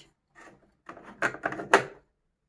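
Plastic capsule holder of a Nescafé Dolce Gusto Piccolo XS coffee machine being slid back into its slot: about a second of plastic rubbing and scraping, ending in a sharp click near the end.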